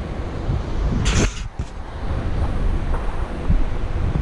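Wind rushing over the microphone of a paraglider pilot's camera during the low glide just before touchdown: a steady low buffeting rumble, with a brief louder hiss about a second in.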